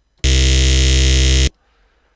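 A single held synthesizer note from Ableton's Operator, steady in pitch, bright and buzzy with many overtones. It starts and stops abruptly, lasting about a second and a quarter. This is the dry carrier signal for a vocoder.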